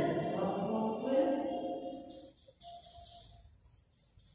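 Singing voices holding notes, loudest in the first two seconds and then fading away. Faint scratches of chalk on a blackboard follow near the end.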